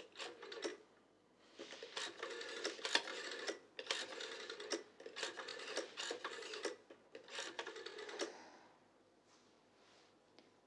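Rotary telephone dial being turned and spinning back, digit after digit: about five short runs of quick clicks with brief pauses between them as a number is dialed.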